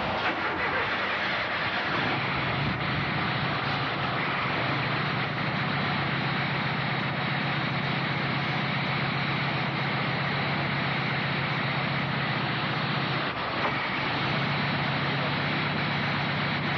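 A car engine running steadily: a low, even hum under a constant hiss, with no change in speed or pitch.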